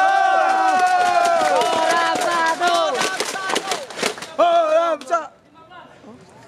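Tennis spectators cheering with long drawn-out shouts from several voices together, joined by a burst of hand clapping, followed by one more short shout a little before the end.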